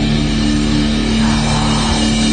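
Live heavy metal band playing loud, with heavily distorted guitars holding a steady low droning chord over the drums.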